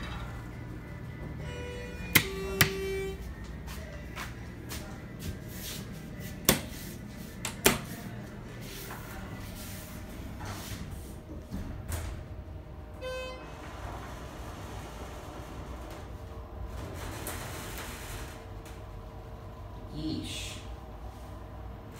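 Schindler 330A hydraulic elevator cab: a few sharp clicks and knocks from the doors and buttons in the first eight seconds, and a short electronic chime or beep about two-thirds through, over a steady low hum.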